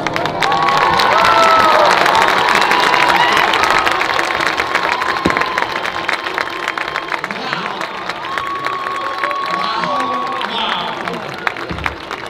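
Stadium crowd cheering, whooping and clapping as a marching band's field show ends. It is loudest in the first few seconds and slowly dies down.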